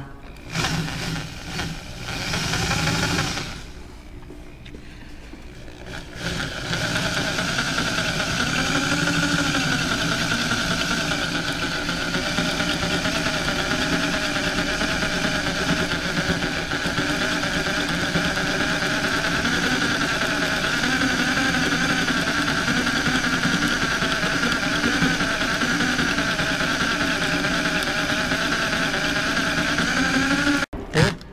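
Electric drill driving a left-handed drill bit into a broken header bolt in an LS cylinder head. It starts and stops a few times in the first three seconds, then runs steadily from about seven seconds in.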